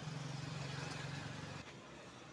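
A motor vehicle's engine running with a steady low hum, which drops away suddenly about one and a half seconds in.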